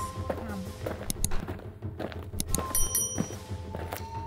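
Background music with held notes, scattered short knocks and clicks, and a brief high chiming tone about three seconds in.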